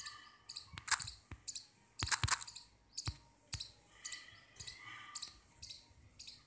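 A handful of short, sharp clicks and taps, about six spread over the first four seconds, over faint background noise.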